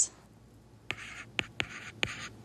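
Stylus writing on a tablet: short scratchy strokes and sharp taps start about a second in as numbers are written by hand.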